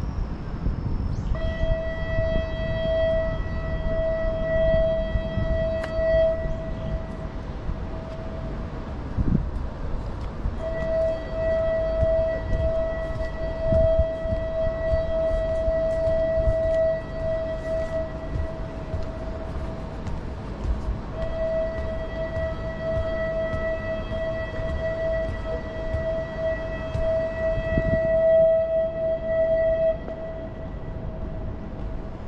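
A steady signal tone of one unchanging pitch, a horn or siren, sounding in three long blasts of about six to nine seconds each, with short gaps between them. Low outdoor rumble lies underneath.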